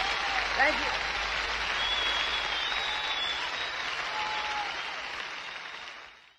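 Concert hall audience applauding after a song, the applause slowly dying away near the end.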